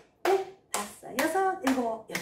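Hand claps in an even beat, about two a second, each with a counted syllable in a woman's voice.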